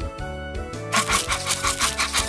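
Background music, joined about a second in by a quick, even patter of cartoon running-footsteps sound effect, about six or seven steps a second.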